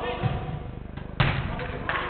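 A football kicked hard: one sharp thud about a second in, the loudest sound here, followed by a lighter knock near the end.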